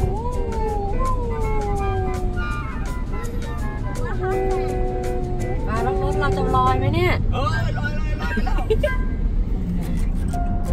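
Long, drawn-out exclamations of amazement in high voices, rising and falling in pitch and held for a second or two at a time, at a dust devil whirling debris around the vehicle. A steady low rumble runs underneath.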